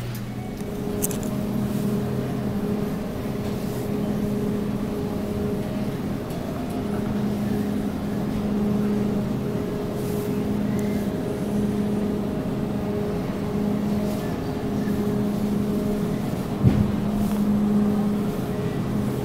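Supermarket ambience: a steady low rumble and hum with faint tones that come and go, and a sharp knock near the end.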